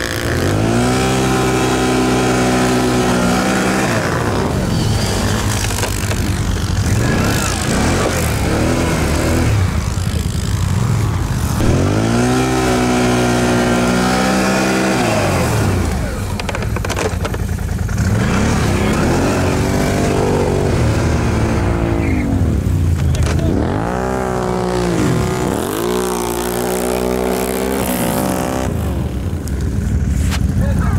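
ATV engines revving hard through deep, soft snow, the pitch climbing and falling in several long surges as the quads work to keep moving.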